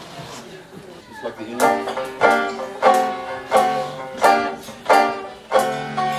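A man's brief laugh, then, from about a second and a half in, a banjo strumming slow, evenly spaced chords, about one every two-thirds of a second, each ringing on before the next: the opening of a Dixieland number played slow like a New Orleans dirge.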